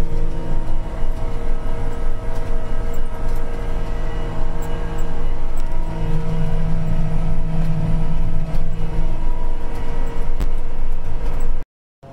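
Apache self-propelled sprayer's engine running steadily under load, heard from inside the cab as a constant drone with a slight swell about halfway through. It cuts off abruptly just before the end.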